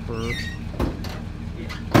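A truck engine idling low and steady, with a short squeak early, a couple of knocks, and a sharp, loud clank right at the end.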